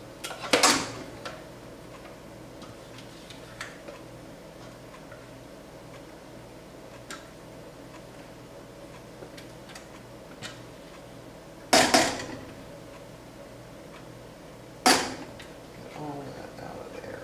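A spatula working ground corn out of a plastic food processor bowl into a stainless steel saucepan: faint scrapes and small clicks, with a sharp knock just after the start, two loud knocks in quick succession about twelve seconds in and another near the end as utensil and bowl strike the pan.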